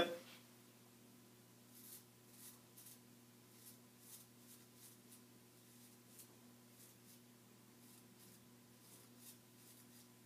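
Shavette straight razor blade scraping through beard stubble on the cheek in a series of faint, short, irregular strokes, over a faint steady hum.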